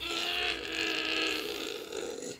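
A young child's voice holding one steady, unchanging note for nearly two seconds, like a drawn-out whine or hum.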